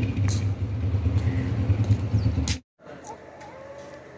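Motorcycle engine idling with a steady low rumble, cut off abruptly about two and a half seconds in. After that comes a much quieter background with faint voices.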